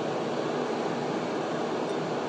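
Steady, even background noise with no distinct events.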